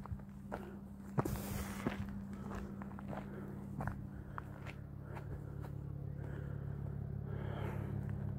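Footsteps crunching on a gravel and dry-leaf footpath, irregular steps with a scuffing crunch about a second and a half in. A steady low hum runs underneath.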